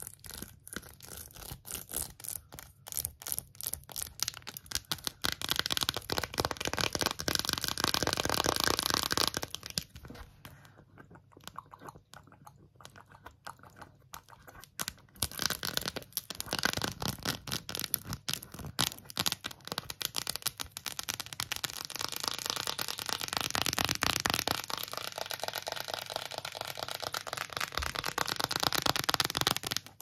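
Rapid tapping and scratching of long false nails on a phone case with raised rainbow heart ridges, a dense run of clicks and scrapes. It eases off into a quieter spell about ten seconds in, then picks up again.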